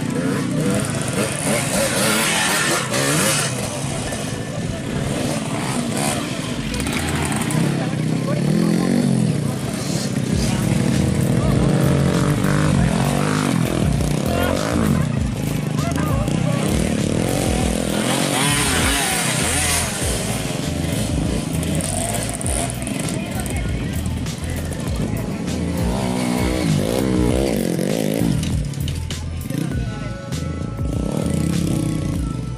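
Several trail-bike engines running and revving, rising and falling in pitch as the bikes ride the dirt track, with people's voices mixed in.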